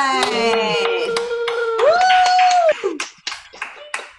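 Several people cheering with long held vocal calls and clapping over a video call. The cheering dies away about three-quarters of the way through, leaving scattered claps.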